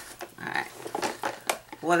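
Rummaging through a handbag: a few short knocks and clicks, with rustling of plastic items being handled as a plastic water bottle is pulled out.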